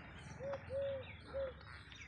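A dove cooing: three soft arched notes in a row, the middle one longest.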